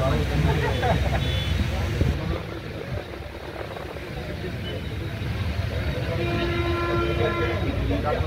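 Voices chattering for the first couple of seconds, then one steady horn blast lasting about a second and a half near the end, from a vehicle horn.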